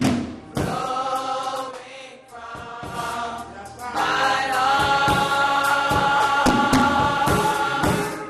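Church choir singing gospel, with drums behind it. The choir's held chord grows louder from about halfway through.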